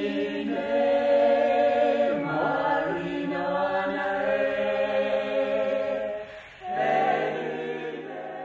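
A small mixed choir of men and women singing together in long held notes. The singing dips briefly shortly before the end, and a new phrase then begins.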